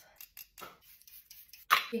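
Two small sharp clicks, then faint clicking and rustling, as a plastic lip gloss tube and its applicator wand are handled. A woman's voice starts near the end.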